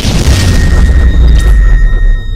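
A loud cinematic boom hit: a burst of crashing hiss over a deep, sustained low rumble, with a thin high ringing tone held above it, layered over intro music.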